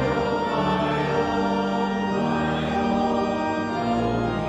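Congregation singing a hymn stanza in held, sustained notes, accompanied by organ.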